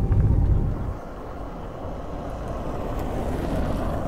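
Low road rumble of a car driving, heard from inside the cabin: louder for about the first second, then dropping to a steadier, quieter rumble that slowly builds again.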